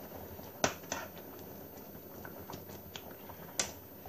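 A utensil stirring Brussels sprouts in thick sauce in a metal frying pan, with a few light clicks and taps against the pan. The sharpest tap comes about half a second in, and another near the end.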